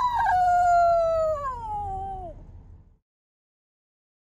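Dog howling: one long howl that slides steadily down in pitch and fades out about two and a half seconds in.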